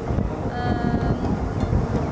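Wind buffeting an outdoor camera microphone, a dense low rumble. A brief held pitched sound rises above it about half a second in.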